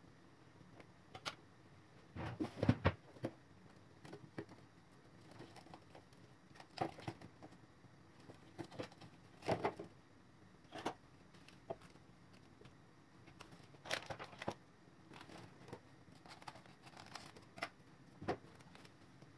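Thin plastic film crinkling and rustling in scattered short bursts as it is pulled and pressed over a silicone mould, the loudest cluster about two to three seconds in.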